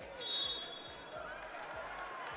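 A referee's whistle blown once, a steady shrill tone lasting about a second, for a foul call. It sounds over the low murmur of a crowd in a large hall.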